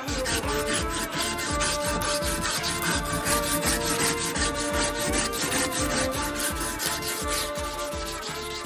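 A strip rubbing back and forth through the steel ring of a leaf-spring-steel kunai's handle, shoe-shine style: quick, even rasping strokes, several a second, as the inside of the ring is finished. Background music plays under it.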